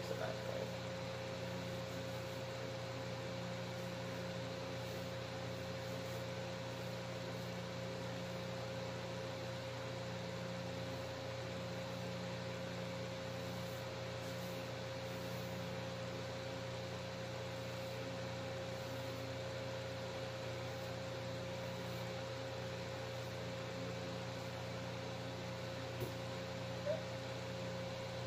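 Steady background hum with a constant mid-pitched tone that does not change.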